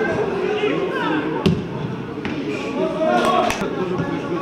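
Players shouting on a football pitch, with the sharp thud of a ball being kicked about a second and a half in and a few lighter knocks later on.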